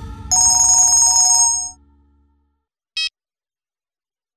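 Mobile phone ringtone: a loud electronic trill of high tones rings for about a second and a half, then a short high beep about three seconds in.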